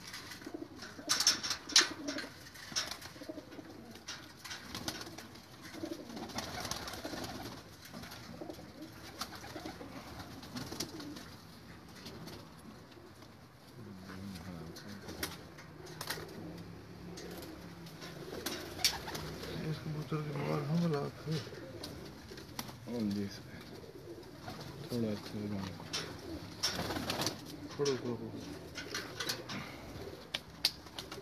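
Domestic pigeons cooing repeatedly, with rustling and a few sharp clicks about a second in as a pigeon is handled and its wing is spread.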